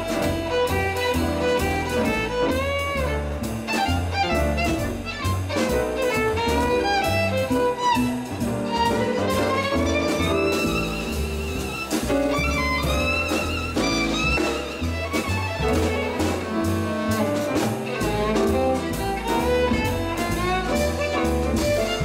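Jazz violin solo, bowed with sliding, ornamented runs, over plucked double bass stepping through a walking line and drums with cymbals keeping swing time.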